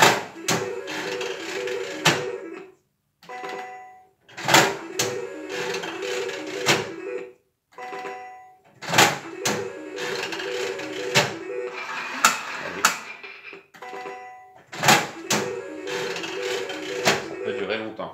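Three-reel 25-cent slot machine spun four times in a row. Each spin opens with a clack and runs a few seconds to a short beeping electronic tune, with sharp clicks as the reels stop, and there is a brief lull before the next spin.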